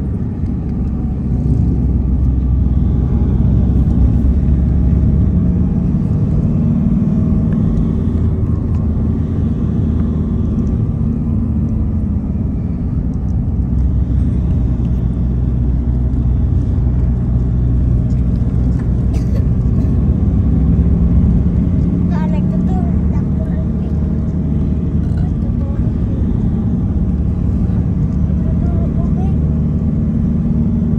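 Steady engine and road rumble of a moving vehicle, heard from inside the cabin.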